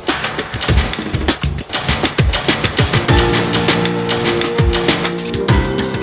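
Background music, with held chords in the second half, over rapid mechanical clicking from a test machine snapping a garden pruner's handles open and shut.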